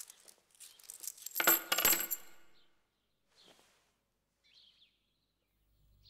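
Silver dollar coins dropped by the handful into a wooden donation box: a quick run of metallic chinks with a bright ring, loudest and densest about one and a half seconds in and over by about two and a half seconds.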